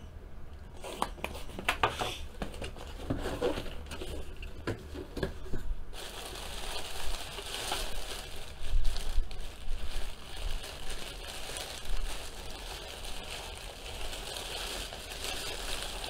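Cardboard box being opened and handled, with scattered light knocks and scrapes. From about six seconds in, the plastic wrapping around a packed jersey crinkles steadily as it is pulled open.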